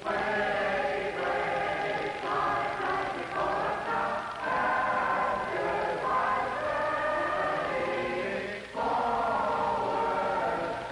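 A mixed chorus of boys' and girls' voices singing together in harmony, on held chords that change every second or so. The singing starts suddenly at the beginning and breaks off briefly near the end before going on.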